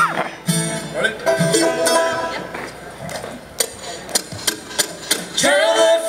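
Live acoustic bluegrass string band playing: fiddle, mandolin, guitar and upright bass, with plucked notes. Voices come in singing near the end.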